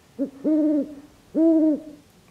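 A woman's voice making three short wordless hooting sounds: a brief one, then two longer ones about a second apart, each rising and falling slightly in pitch.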